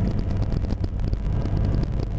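Steady engine and road noise heard inside a moving car's cabin, a low even rumble.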